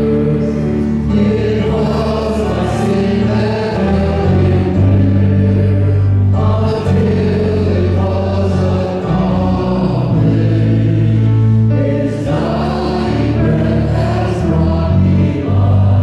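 Small group of men and women singing a slow hymn together over electronic keyboard accompaniment, with long held notes; the phrases break briefly about six and twelve seconds in.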